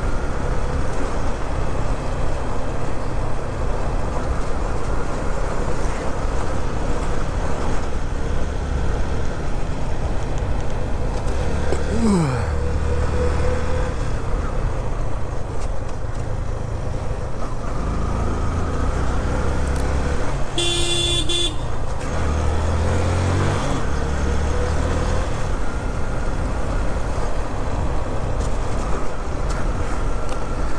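Motorcycle riding in road traffic, its engine and road noise running steadily, with a vehicle horn honking once for about a second past the middle.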